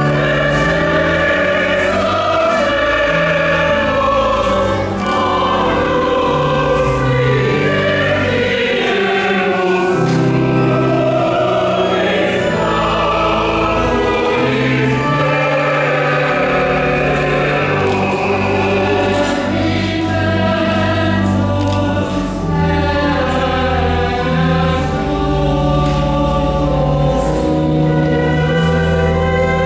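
A choir singing a hymn with organ accompaniment, long-held bass chords under the voices, continuously.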